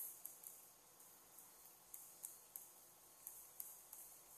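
Near silence: room tone with a few faint, scattered clicks from a pen stylus tapping and moving on a Wacom graphics tablet.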